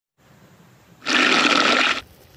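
Water poured into a hot pot over a wood fire, hissing loudly into steam. It starts suddenly about a second in and cuts off abruptly.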